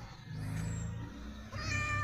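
A tabby kitten meowing: one long, steady, high meow starting about one and a half seconds in.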